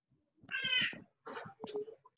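A cat meowing once, a single high-pitched call about half a second in, coming through a video call's audio.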